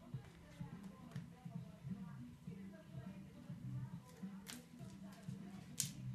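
A sticker being peeled apart from its backing paper by hand: faint paper-and-vinyl rustling, with a few short crackles, the sharpest about four and a half seconds in and again near the end.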